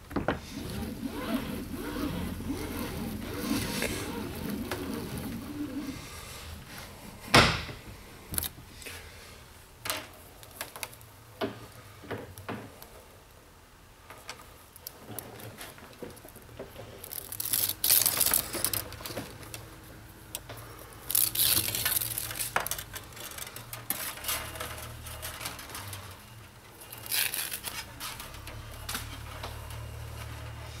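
A prototype solid-wire stripper runs for about the first six seconds as Romex house wire feeds through it, then stops. A sharp knock follows, then scattered clicks and several bursts of rustling as the stripped wire is handled on the bench.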